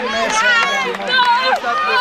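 Several men's voices shouting and calling out over one another, overlapping without a break.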